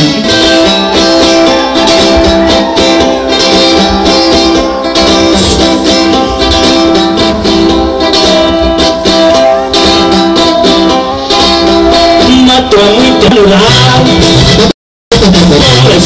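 Loud live band music with brass and a sousaphone playing long held notes over percussion. The sound cuts out completely for a split second near the end.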